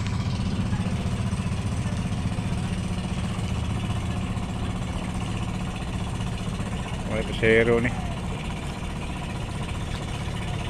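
An engine idling steadily, a low even hum that holds without change. A voice speaks briefly about seven seconds in.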